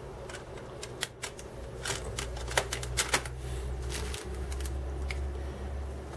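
Scattered light plastic clicks and taps as a CD and its case are handled while loading a portable CD player, over a low steady hum.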